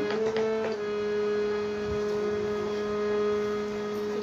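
Harmonium holding a sustained chord, its reeds sounding a steady drone; one of the upper notes drops out under a second in, leaving the lower notes held.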